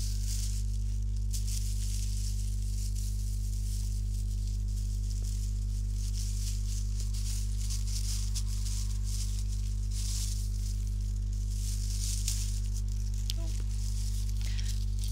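A steady low electrical hum throughout, with soft rustling and crinkling of tissue paper and string being handled and tied.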